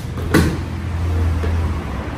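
A single thud about a third of a second in as a thrown person lands on a padded dojo mat, over a steady low hum.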